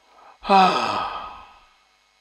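A man's long voiced sigh, falling in pitch and fading out over about a second, preceded by a short intake of breath.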